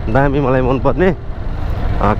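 A man talks for about a second over the steady low rumble of a motorcycle in motion. The rumble of engine and road noise runs on under the pause in his speech.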